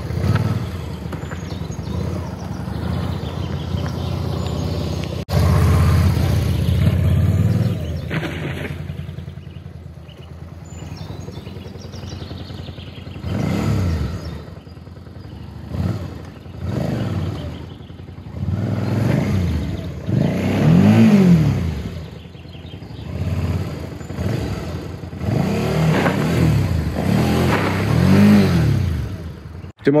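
Suzuki V-Strom 650 V-twin motorcycle engine running, then revved up and down in a string of short rises and falls, during practice of wheelspin launches and rear-wheel slides on loose dirt.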